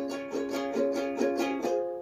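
A ukulele playing an accompaniment pattern in a steady rhythm, about four notes a second.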